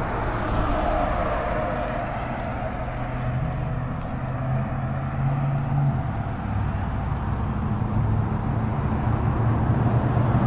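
Road traffic noise: vehicles passing, with a steady low engine hum.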